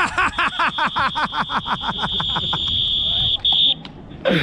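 A steady high-pitched tone, like an alarm or buzzer, held for about three and a half seconds. Under it runs a fast even pulsing of about eight beats a second that dies away before the tone cuts off.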